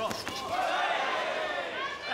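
A few quick thuds of kickboxing blows landing in a clinch near the start, with voices calling out from ringside throughout.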